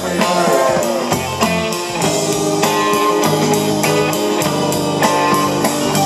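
Live rock band playing an instrumental passage: electric guitar prominent over bass, keyboards and drum kit, with a quick steady cymbal tick and gliding, bent guitar notes in the first second.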